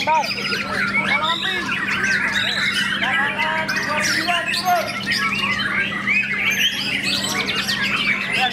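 White-rumped shama (murai batu) singing a rich, varied song of whistles, trills and chattering notes, densely overlapped by other caged songbirds singing at the same time. A steady low hum runs underneath.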